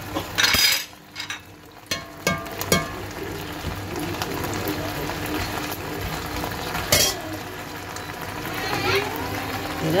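Pork loin steaks and garlic sizzling in hot oil in a pot, with a metal slotted spoon clinking and scraping against the pot as the meat is moved; a few sharp clinks stand out, the loudest about seven seconds in.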